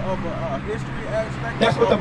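Men's voices talking, with a louder stretch of speech near the end, over a steady low hum.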